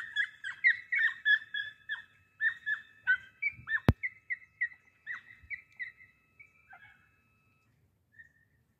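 Podenco hound giving tongue on a hare: a quick run of short, high-pitched yelps, several a second, growing fainter until they stop about seven seconds in. A single sharp click sounds near the middle.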